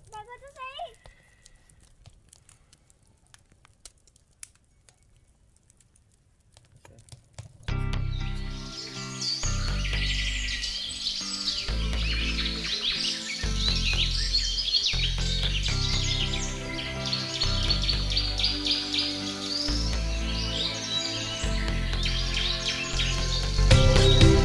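Faint crackling of a small wood campfire, then about a third of the way in, background music with a steady low beat starts abruptly, with bird chirping running through it.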